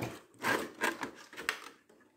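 A clear plastic display case being slid and set down on a table, making a few short scrapes and light knocks.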